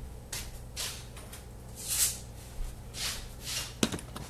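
Soft rustling and shuffling of someone moving about a kitchen and picking things up from the counter, with one sharp click near the end, over a low steady hum.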